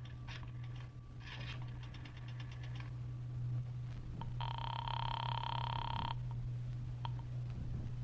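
Payphone being dialed in a radio-drama sound effect: rapid runs of rotary dial clicks, then a single telephone ring on the line about four seconds in, lasting under two seconds.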